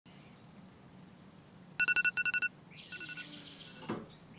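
Electronic alarm beeping: two quick runs of rapid, short two-tone beeps, then one longer beep. A brief rustle follows near the end.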